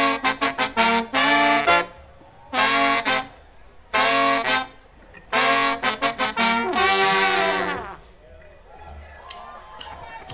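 Horn section of baritone and tenor saxophones, trombone and trumpet playing short unison phrases separated by pauses, with a run of quick stabs in the first two seconds. Around seven seconds a held chord falls away in pitch and the horns drop out, leaving a quieter stretch.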